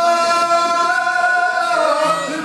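Albanian folk singing: a man's voice holds one long note, then bends down off it near the end, over plucked çifteli accompaniment.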